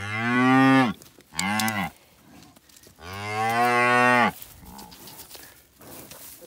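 A cow mooing three times: a call about a second long, a short one, then a longer one about three seconds in. It is a mother cow calling while her newborn calf is handled.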